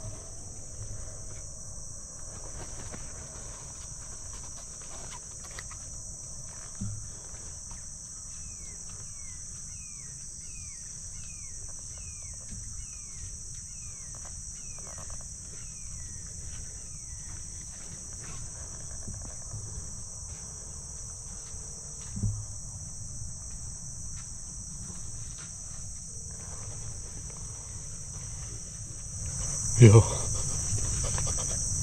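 Steady high-pitched insect chorus, crickets and similar night insects, droning on without a break. In the middle comes a run of short falling chirps, about one and a half a second, and two soft low thumps stand out, one early and one past the middle.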